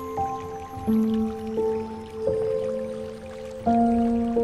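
Slow solo piano music: sustained single notes over held low bass notes, a new note or chord struck about once a second and left to ring.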